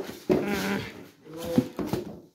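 Two short wordless vocal sounds with a wavering pitch, one near the start and one in the second half.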